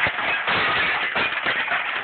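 Broken window glass being knocked out of its frame with a hand tool, the shards shattering and clattering down. There is a sharp knock at the start and another about half a second in, then a dense, steady crunch of breaking glass.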